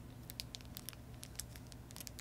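Faint crackle of the thin clear plastic wrap around a small vinyl figure as it is held and turned in the hand: a scatter of soft, irregular clicks over a low steady hum.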